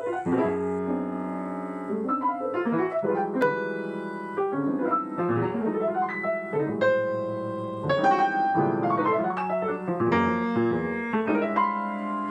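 Computer-controlled Steinway grand piano playing on its own, starting suddenly with a mix of fast runs, clustered chords and held, ringing notes.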